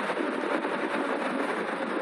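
Steady rushing wind and road noise from an electric bike travelling at about 40 mph, the wind buffeting the camera microphone.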